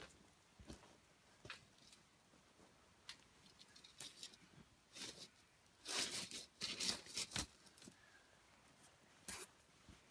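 Scattered faint knocks and scuffs, then about six seconds in a short run of scraping and clanks as a folding metal camp grill is set down over the campfire's coals, with one more knock near the end.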